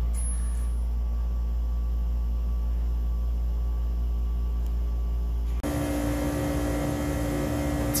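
Thermotron S-16-8200 temperature chamber running at full cooling toward a −87 °C set point: a steady, deep machine hum. About five and a half seconds in, the hum changes abruptly to a fuller drone with several steady tones.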